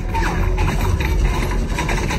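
Film soundtrack music with a heavy bass, played over cinema speakers and picked up from the audience.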